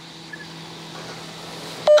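Faint steady hiss with a low, even hum during a pause in a phone conversation, ending in a click as speech resumes near the end.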